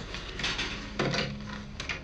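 A telephone handset being picked up: handling clatter with a sharp knock about a second in.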